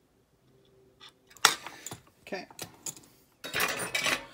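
Small metal parts and tools clinking and tapping on a workbench: one sharp clink about a second and a half in, then several lighter ones, and a burst of rustling handling noise near the end.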